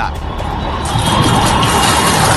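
Background music with a loud rushing noise over it that swells about a second in.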